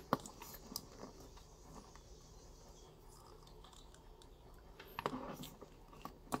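Plastic action figure being handled and posed, its parts and joints giving faint clicks: two sharp clicks at the start, another a little later, and a short patter of small clicks and rustles about five seconds in, with low room hiss between.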